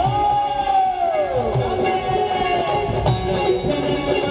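Live band music with keyboard and a steady drum beat, under one long held note that slides down in pitch about a second and a half in.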